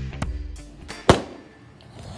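A partly filled plastic water bottle hits a wooden tabletop once, about a second in, with a single sharp knock, and ends up tipped over on its side. Guitar music fades out in the first half second.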